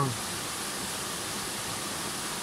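Steady rushing of a spring-fed mountain stream running over rocks.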